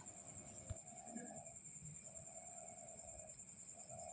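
Faint, steady high-pitched trill of crickets, with a fainter lower tone that comes and goes three times.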